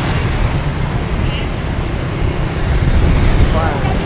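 Busy city street traffic: motorbikes and cars passing, a steady low rumble of engines and tyres, with a brief voice near the end.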